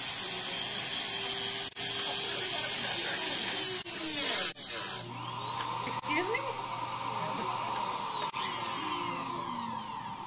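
Small handheld rotary tool running at high speed with a steady high whine as it cuts at the edge of a copper box. It stops about four seconds in, starts again a second later, and winds down in a falling whine near the end.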